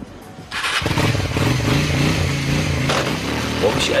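Cruiser motorcycle engine starting about half a second in and then running, its pitch rising and falling with the throttle.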